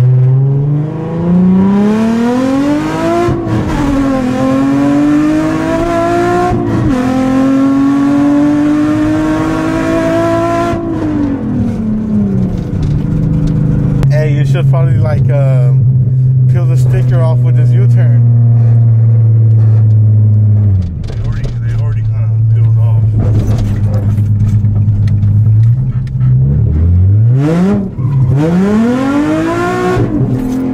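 Nissan 350Z's 3.5-litre V6 through its Tomei exhaust, heard inside the cabin. It accelerates through two upshifts in the first several seconds, eases off, and cruises at a steady drone. Near the end it revs up sharply again.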